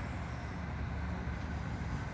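A steady, low background rumble of outdoor noise with no distinct events.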